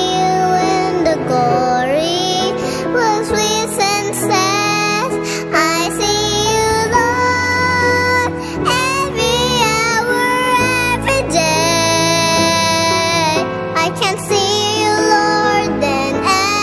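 A Christian worship song sung by children over an instrumental backing track, the singing continuous and wavering in pitch.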